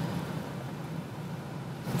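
Truck running, heard from inside the cab as a steady low hum of engine and road noise.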